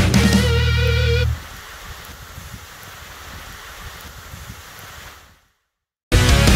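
Metal band with distorted electric guitars and bass ending on a held chord with a wavering, vibrato guitar note, cut off sharply about a second in. A much quieter steady hiss follows and fades to silence near the end.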